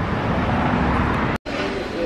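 Steady city street traffic noise, broken by a sudden brief dropout about one and a half seconds in where the sound cuts to a different background.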